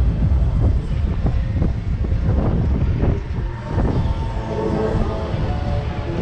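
Wind buffeting the microphone of a camera mounted on a swinging slingshot-ride capsule: a heavy, continuous low rumble.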